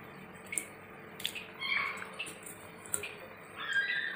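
Thick fish curry simmering in a steel pot, its bubbles popping in scattered soft clicks. Two brief high-pitched cries stand out, one a little before the middle and one near the end.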